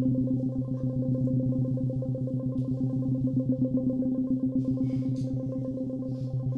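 Electroacoustic music for four modified clarinets and electronics: a low, sustained, distorted-sounding drone that pulses rapidly and evenly.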